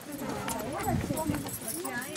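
Several women talking over one another at a moderate level, with scattered light clicks and taps from the flatbread cooking.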